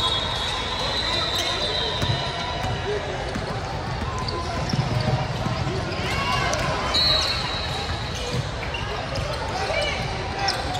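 A basketball being dribbled on a hardwood gym floor during play, with the voices of players and spectators mixed in.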